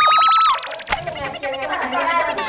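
A comedic editing sound effect: a high whistle tone that slides upward with a fast, wide warble and cuts off abruptly about half a second in.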